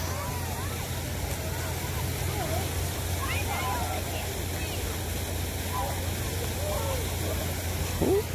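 Steady rush of water from ornamental fountains and waterfalls, with faint distant voices over it.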